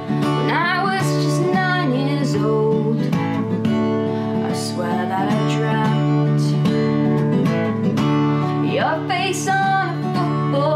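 A woman singing to her own strummed acoustic guitar: steady chords throughout, with her voice coming in phrases over them.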